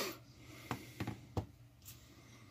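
A man's breath out through the nose, then three faint sharp ticks across the middle, like a pen writing on paper, and a soft breath near the end.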